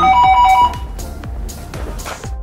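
Video intercom indoor monitor's electronic ringing tone, a steady two-note ring, cut off abruptly less than a second in as the call key is pressed to end the intercom call.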